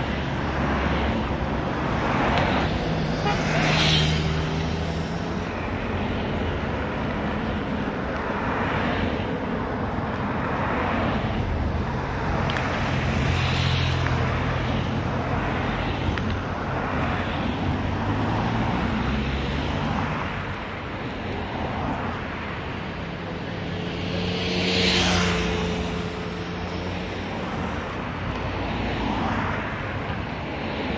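Team support cars with bicycles on their roof racks driving past one after another, engines running and tyres on tarmac, each pass swelling and fading. The loudest passes come about 4, 13 and 25 seconds in.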